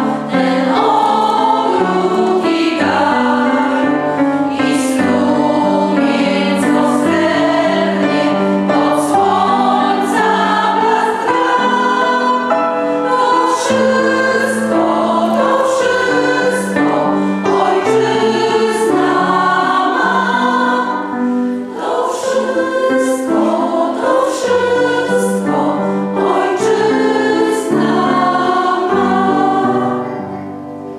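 Women's vocal ensemble singing a song in sustained multi-part harmony, with piano accompaniment.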